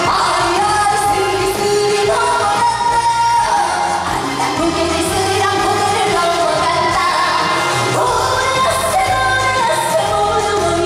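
A woman singing a Korean trot song live into a handheld microphone over loud amplified backing music, her voice carried through the stage PA.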